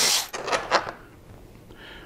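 A power driver spinning out a Torx T27 fairing screw stops shortly after the start. A few light clicks and taps follow as the screw comes free and is handled, then it goes quiet.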